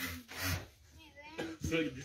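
Ostrich hissing in threat with its beak gaping, a short breathy hiss at the start: the sign of an agitated, aggressive bird.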